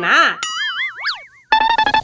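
Cartoon comedy sound effect: a wobbling, warbling boing-like tone about a second long, with a quick swoop up and down in pitch partway through. A short steady buzzy tone follows near the end.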